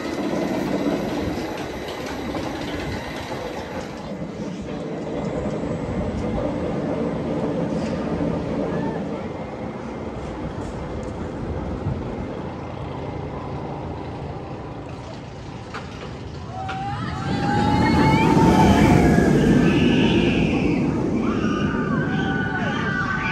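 Steel roller coaster train rumbling along its track. From about 17 seconds in the track noise swells louder and riders scream as the train speeds through its elements.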